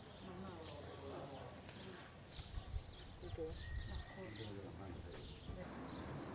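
Faint outdoor ambience: distant people talking in low voices, with small birds chirping in short high notes throughout. A couple of soft low thumps come about halfway through.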